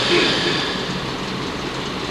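Steady rumbling background noise of a crowded hall, heard in a gap between phrases of a man's announcement.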